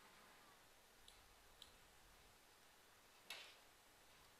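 Near silence with three faint computer mouse clicks: two small ones about a second in, half a second apart, and a louder one a little after three seconds.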